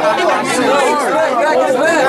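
A man rapping a cappella, with no beat behind him.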